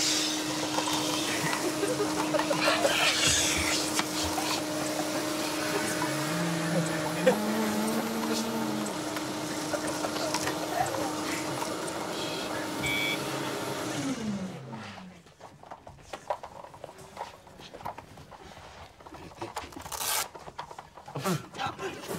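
Vacuum motor running steadily with a whine as it blows couch debris through hoses into a clear helmet. About fourteen seconds in it is switched off and its pitch falls as it spins down.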